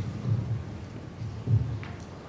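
Two low thuds on a hollow wooden stage floor, about a second apart, the second louder, as children walk and shuffle across the stage.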